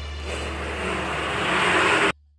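A rushing swell of noise at the end of a karaoke backing track. It grows steadily louder and then cuts off abruptly as the recording ends.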